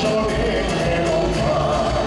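Live band playing a song, with several voices singing a held, gently wavering melody over a steady beat.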